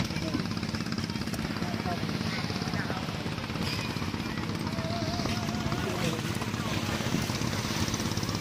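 A steady, low engine drone, with people talking in the background.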